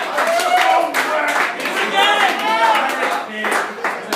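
Audience applauding, with several voices calling out and cheering over the clapping.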